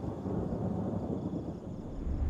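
A low, steady rumble in a horror film trailer's soundtrack, thunder-like, with no clear strikes or tones.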